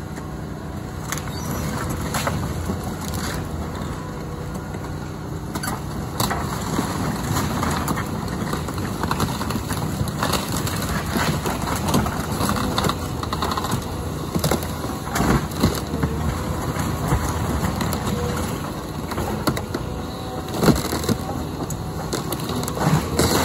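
Caterpillar excavator's diesel engine running steadily while it crushes splintering wood debris, with sharp cracks and snaps that grow busier after the first few seconds. The loudest cracks come in the second half.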